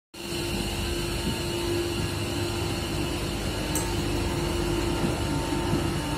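Railcar rolling slowly along the track: a steady mechanical hum with a constant held tone, and a single light click about halfway through.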